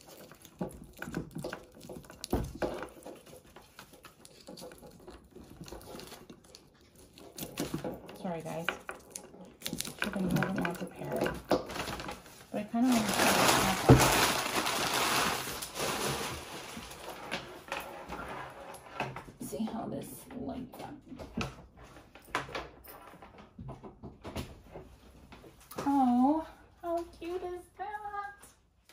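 Handling noises on a wooden tabletop: scattered clicks and knocks as a plug and cord are worked, with a loud rustle lasting a few seconds about halfway through, and a few brief, quiet voice sounds.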